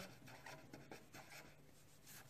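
Felt-tip marker writing a word on paper: faint, short strokes, mostly in the first second and a half.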